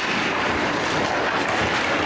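Live sound of an ice hockey game: skates scraping and sticks clattering on the ice during a scramble at the net, heard as a steady noisy din.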